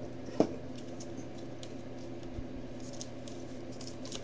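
Faint handling noises of a thick trading card and a stiff clear plastic toploader: a sharp click less than half a second in, then a few light ticks and scrapes, over a steady low hum.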